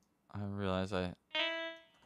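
A short low vocal murmur, then a single synth note about a second in, held steady for roughly half a second and fading: a MIDI note previewed as it is clicked or moved in a piano roll.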